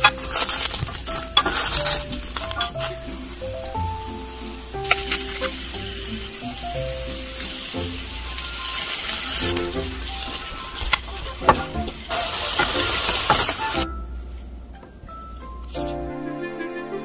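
Sliced eggplant sizzling as it pan-fries in an electric pan, with sharp clicks from a wooden spatula turning the slices. The sizzling stops about two seconds before the end.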